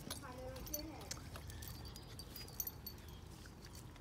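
Quiet moment with small dogs moving about on a concrete patio: scattered faint ticks and clicks, with a faint voice in the first second.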